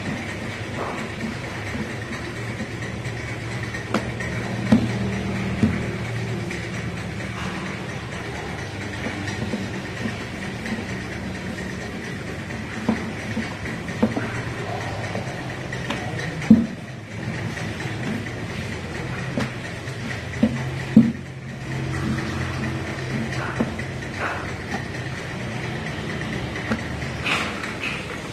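Wooden rolling pin rumbling back and forth over a wooden board as dough is rolled out into thin samosa sheets, with a few sharp knocks of the pin and dough against the board, over a steady background hum.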